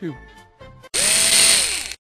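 Electric drill running for about a second: it starts abruptly, its whine rises in pitch, holds, then drops as the motor winds down.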